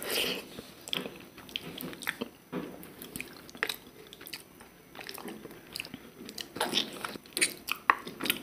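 Close-up chewing of a mouthful of mutton curry and rice, with irregular wet mouth clicks and smacks; a louder burst right at the start as a handful goes into the mouth.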